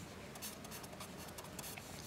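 Pen writing on a paper notepad: faint, short strokes in quick succession as a mathematical symbol is written out.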